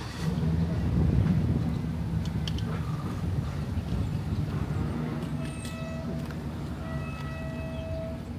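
A motor-vehicle engine running with a low, steady rumble that swells just after the start and slowly eases. A faint high tone comes in twice in the second half.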